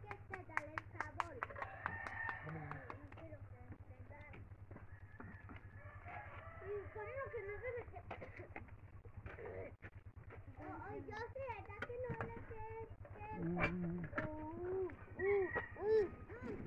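Indistinct chatter of several people, with a few sharp clicks in the first few seconds.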